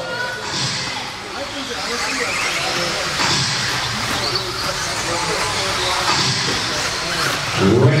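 Electric 2wd RC buggies racing on an indoor clay track: motor whine rising and falling as they accelerate and brake, over tyre and chassis noise, with crowd chatter in the hall.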